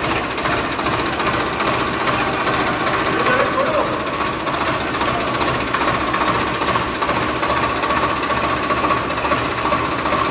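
A machine running steadily with a regular mechanical clatter.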